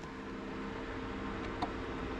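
A low, steady electrical hum with several level tones runs throughout, with a faint click about one and a half seconds in as an RJ45 network-cable plug is worked into a battery's communication port.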